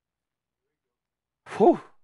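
Silence, then about one and a half seconds in a man lets out a single loud, breathy "whew".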